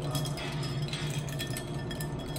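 A spoon stirring a drink in a stemmed glass, with repeated small clinks and rattles of the spoon against the glass. A steady low hum runs underneath.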